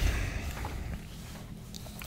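A pause in conversation: low hum and faint room noise picked up by the microphones, fading over about the first second and then holding steady.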